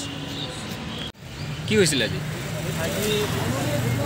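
A man speaking over the steady low hum of a motor vehicle running nearby, with a brief break in the sound about a second in.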